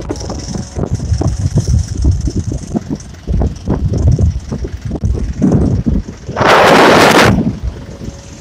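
Wind buffeting the microphone in uneven gusts while riding in the open back of a moving truck, over the truck's engine and road noise. A strong gust about six and a half seconds in makes a loud rushing blast lasting nearly a second.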